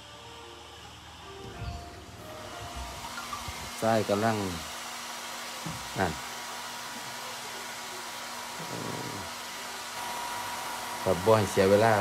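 A hair dryer running with a steady blowing hum that comes in about two seconds in, with a man's brief words over it.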